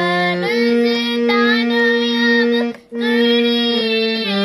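A girl singing a melody over sustained chords on a small keyboard instrument, with a brief pause for breath about three seconds in.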